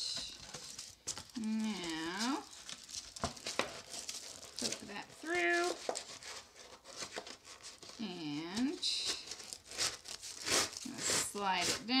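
Aluminium foil and a paper plate crinkling and rustling in short scratchy bursts as a foil-wrapped cardboard tube is worked through a hole in the plate. A woman hums or sings short wordless notes four times among the crinkling.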